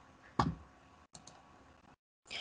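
Computer mouse clicking: one sharp click, then two faint quick clicks about a second in, as the slide is advanced.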